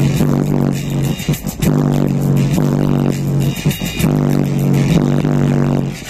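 Loud, bass-heavy music playing on a car stereo through a pair of 10-inch subwoofers in a ported box, heard inside the car.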